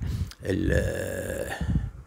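A man's low, drawn-out hesitation sound, an 'ehhh' held at a fairly even pitch for about a second and a half between phrases.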